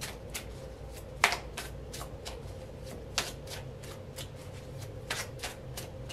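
A tarot deck being shuffled by hand: an irregular run of short card clicks and slaps, the sharpest about a second in.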